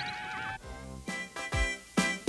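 The tail of a rising, whirling cartoon sound effect dies away in the first half second, then bouncy cartoon music starts, with deep bass notes from about a second and a half in.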